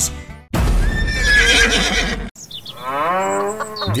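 Farm-animal calls: a horse neighs about half a second in, then a cow lows with one long call near the end.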